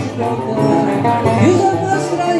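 Live acoustic music: a cavaquinho and a guitar strummed together while a man sings, his voice sliding up in pitch about a second and a half in.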